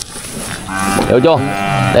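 A cow mooing: one long, drawn-out moo that starts about half a second in.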